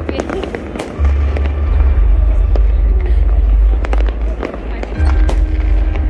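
Fireworks display, shells launching and going off in a loose string of sharp bangs and crackles, over a heavy low rumble.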